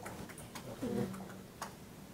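Quiet room with a few faint, irregular clicks and a brief faint murmured voice about a second in.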